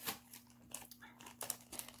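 A small bag crinkling faintly as it is handled, with a few light clicks.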